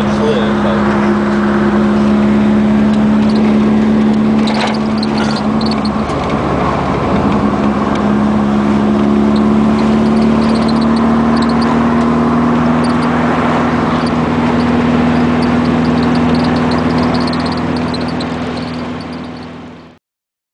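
VW Super Beetle rat rod's engine running under way, heard from inside the car with road and wind noise; its note dips about six seconds in, then climbs slowly. The sound fades out near the end.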